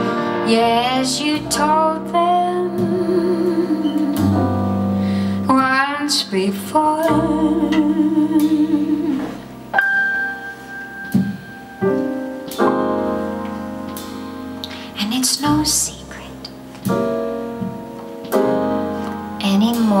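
A live jazz band playing: a woman singing with a wavering vibrato on long held notes, over piano and upright double bass.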